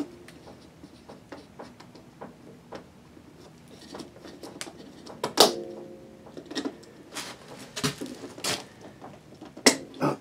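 Trailer door being shut and latched: scattered clicks and knocks. The loudest knock comes about halfway through, with a short ring after it, and a few more knocks follow toward the end.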